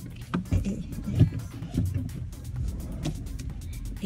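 Steady low rumble inside a car cabin, with music playing under it.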